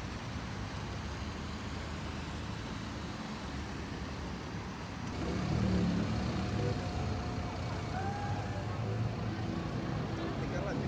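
City street ambience: steady road traffic noise from passing cars. From about halfway it gives way to the murmur of people's voices in a busy public square, with a faint held tone near the middle.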